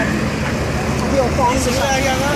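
Raised voices calling out over a loud, steady background noise.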